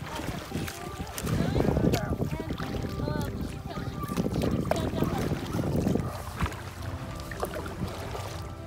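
Kayak paddling on a lake: paddle blades splashing and water sloshing, with wind rumbling on the microphone and faint voices in the distance.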